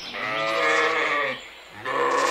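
Sheep bleating: one long bleat lasting over a second, and the next bleat beginning near the end.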